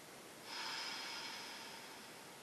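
A woman's long audible exhale, breath rushing out, starting about half a second in and fading away over the next second and a half.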